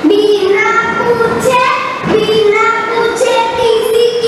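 A child singing, holding long steady notes in a large hall.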